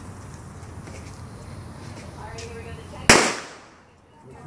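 A single loud firecracker bang about three seconds in, sharp and sudden, with a short ringing decay.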